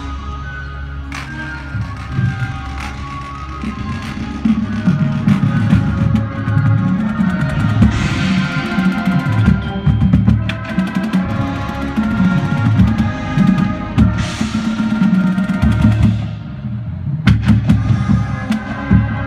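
High school marching band playing: brass including sousaphones holds sustained chords over a drumline with marching bass drums. The music grows louder about four seconds in, with two big bright swells about eight and fourteen seconds in.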